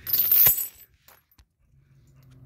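Heavy metal chain leash rattling in a short, bright jingle lasting under a second, with a sharp click of links near its end.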